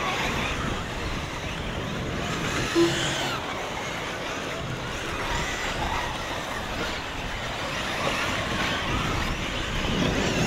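Several electric 1/8-scale RC truggies racing on a dirt track: their electric motors whine, rising and falling in pitch with throttle, over a steady hiss of track noise.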